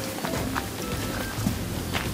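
Quiet background music with a few short held notes.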